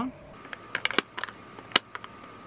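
Lipstick tubes clicking and tapping against a clear acrylic lipstick organizer as they are picked up and set into its slots: a run of light, sharp clicks from about three-quarters of a second in.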